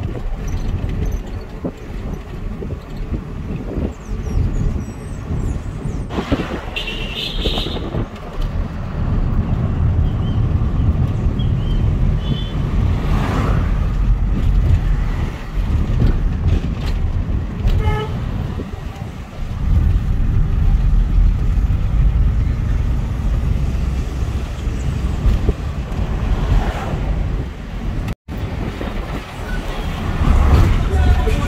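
Taxi car driving along a road, heard from inside: a steady low rumble of engine and tyres. A short car horn toot comes about two-thirds of the way through.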